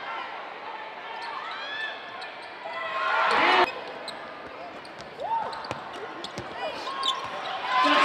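Live court sound of a basketball game in an arena: a basketball bouncing on the hardwood with sharp knocks, short squeaks, and voices calling out. A loud swell about three and a half seconds in cuts off suddenly.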